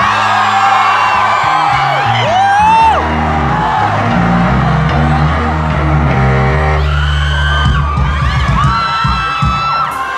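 Live band playing loud pop-rock with a driving bass line, a singer on microphone, and the crowd whooping and yelling along.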